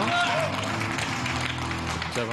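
A man's voice, mostly one long held sound, over the hall's background sound.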